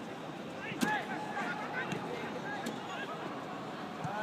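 Faint shouts and calls of footballers carrying across an open pitch over a steady outdoor hiss, with a sharp click about a second in.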